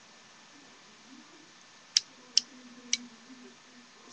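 Three sharp clicks about half a second apart, starting about halfway through, from the blue handheld cutting tool being worked in the hand.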